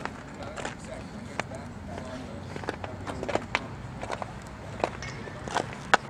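Outdoor ballfield background: faint distant voices with scattered light clicks and taps.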